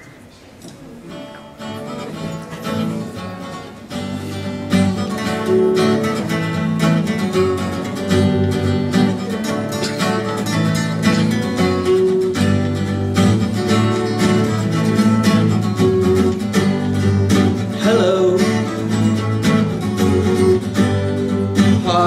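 Two acoustic guitars strumming and picking a song's introduction, starting softly and coming in fuller about four seconds in.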